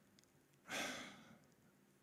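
A man sighing once into a close microphone: a breathy exhale of about a second that starts just under a second in and fades away.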